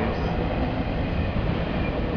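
Steady outdoor background noise, a continuous rumble and hiss with no clear rhythm or distinct events.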